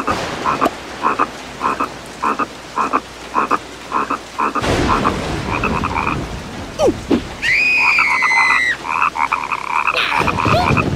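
Frogs croaking in a steady rhythm, nearly two croaks a second, over rain. A short falling squeak comes around seven seconds in, followed by a long high-pitched whine.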